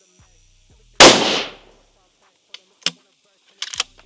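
A single rifle shot from a 6 Creedmoor precision rifle fired from prone, sudden and loud with about half a second of echoing tail. A few light, sharp clicks follow near the end.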